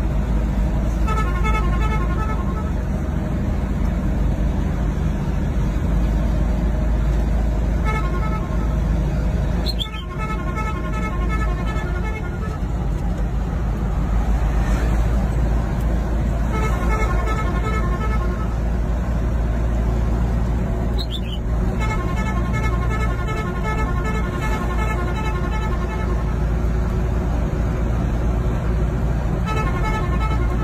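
Car horn honking in repeated blasts of one to three seconds each, several times over, above a steady low rumble of engines and road noise from the dump trucks ahead.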